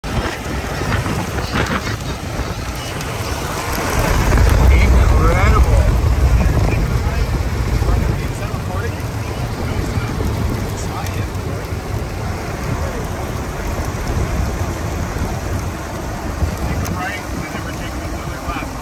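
Strong storm wind buffeting the microphone, with rain. A heavy low rumble grows louder at about four seconds in and eases off after about eight.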